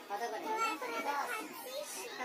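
People talking: voices throughout, with no other distinct sound standing out.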